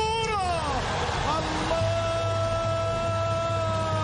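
A football commentator's long, drawn-out goal cry. A falling shout opens it, then about a second in he holds a single note that runs on, greeting a penalty that beats the goalkeeper.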